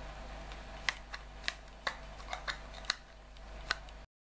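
A small plastic powder compact being handled: a scatter of light clicks and taps of plastic case and fingernails, about eight in the space of three seconds.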